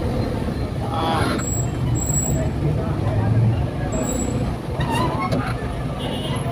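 Street traffic of motorcycle-sidecar tricycles and motorbikes: engines running at low speed, heard as a steady low rumble.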